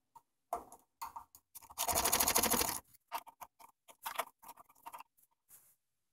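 Socket ratchet clicking as it backs out the 13 mm bolt that holds the exercise bike's crank arm. A fast run of clicks lasts about a second, starting about two seconds in, with a few lighter single clicks and taps before and after it.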